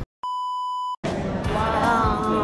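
A steady 1 kHz test-tone beep, the reference tone of TV colour bars, used as an edit transition. It lasts under a second and cuts off sharply. Music with voices comes in about a second in.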